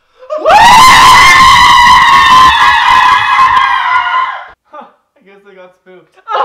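A young man's long, high-pitched scream that shoots up in pitch at the start, holds for about four seconds and then breaks off.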